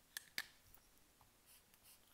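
Pens handled on paper: two sharp clicks about a fifth of a second apart, then faint rustling of a hand moving over the sheet.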